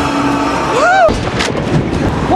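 A voiced gasp that rises and falls in pitch, then a loud crash about a second and a half in, over a low rumble.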